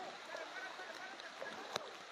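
Faint, even rush of floodwater, with a single sharp click near the end.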